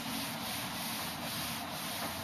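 Whiteboard eraser rubbing across a whiteboard, wiping off marker writing with a continuous scrubbing sound.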